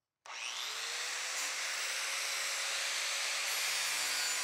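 Corded angle grinder on a mower blade sharpening jig switched on about a quarter second in. Its whine rises quickly as the motor spins up, then it runs steadily at full speed with a loud hiss.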